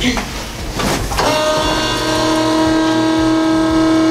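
Rustling and shifting as a person lies back on a padded treatment table. About a second in, a steady hum at one unchanging pitch starts and holds, and it is the loudest sound.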